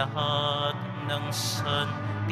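A church hymn sung in a chant-like style over a steady low accompaniment.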